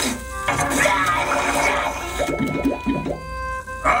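Cartoon soundtrack: background music with a watery, bubbling sound effect in the first half, then a run of short rising glides.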